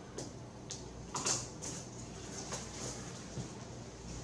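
Hollow aluminum window spacer bars, filled with desiccant, sliding and scraping on a wooden bench and clicking as a spacer frame is fitted together at its corners: a few short scrapes and knocks, the loudest about a second in.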